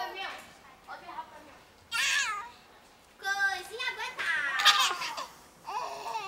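A baby cooing and squealing in several short, very high-pitched vocalisations, the longest about four seconds in, with laughing sounds.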